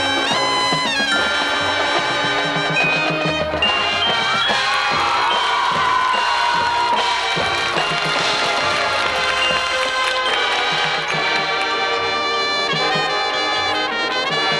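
High school marching band playing a loud full-band passage: the brass section carrying the melody over a drumline and pit percussion, with a descending pitch glide about five seconds in.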